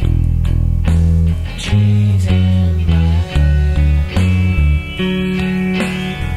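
Electric bass guitar playing a rock bass line of held low notes, changing every half second or so, over a full-band rock recording with guitars.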